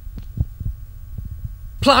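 A low rumble with a few soft thumps, the loudest about half a second in.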